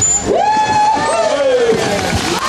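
A person's long, drawn-out whoop over crowd noise: it rises sharply, is held, then slides down in pitch through the second half.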